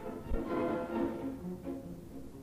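A small orchestra, led by bowed strings, playing an instrumental passage of a Hungarian operetta number between sung lines.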